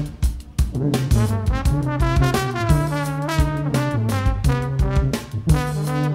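A New Orleans-style brass band playing live: a sousaphone holds low bass notes under trombone and trumpet lines, over regular percussion hits.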